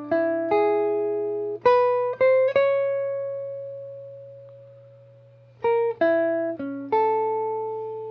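Hollow-body archtop electric guitar playing a blues lick over the five chord (E in the key of A), mostly two notes at a time. A quick run of paired notes leads into one note left ringing for about three seconds, then a second short run comes near the end, over a faint steady amplifier hum.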